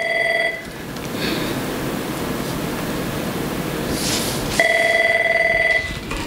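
A telephone ringing with a warbling electronic tone in two rings, each just over a second long. One ends just after the start and the next begins about four and a half seconds in.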